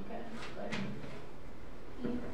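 Handheld microphone being handled and picked up, with two soft knocks about a third of a second apart over faint murmured voices.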